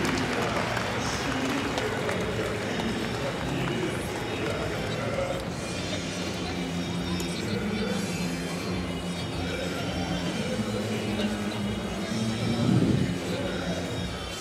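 Crowd chatter filling a large indoor arena, with music over the hall's sound system coming in about halfway through and swelling briefly near the end.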